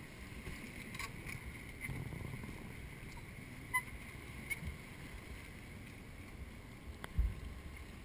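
Trials bike hopping across boulders: a few sharp knocks as the tyres land on rock, the heaviest, with a low thump, about seven seconds in. Under it a steady low rumble of wind and water lapping.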